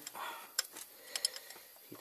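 A few light metallic clicks of a ring spanner working a pulley nut on a 1.6 HDi diesel engine's timing-belt end, as the nut is tightened by hand.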